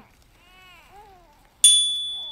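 A faint infant-like cooing from the film's soundtrack, then about 1.6 s in a sharp, bright notification-bell "ding" sound effect from the subscribe-button animation, ringing on as a clear high tone that slowly fades.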